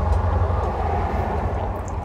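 Low, steady rumble of passing street traffic, a motor vehicle going by and easing off slightly toward the end.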